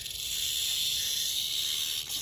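Western diamondback rattlesnake rattling its tail: a steady, unbroken dry buzz. It is the defensive warning of a snake coiled and standing its ground.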